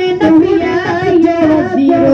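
Devotional song in praise of Ali, sung in a high voice with a wavering pitch over instrumental accompaniment; a steady held tone comes in near the end.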